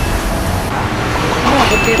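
Steady street traffic noise: a continuous even rumble of passing road vehicles.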